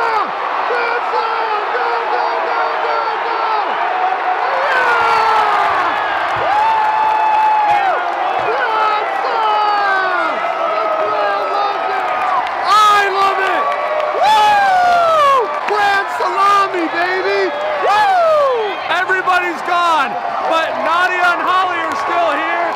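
Baseball stadium crowd cheering a grand slam: many voices yelling and whooping at once, with loud shouts from fans close by about two-thirds of the way through.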